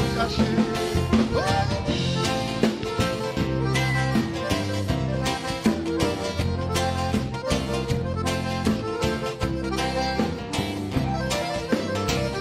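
Live band playing an instrumental break of a gaúcho dance tune: piano accordion leading over acoustic guitar, electric bass and drum kit, at a brisk steady beat.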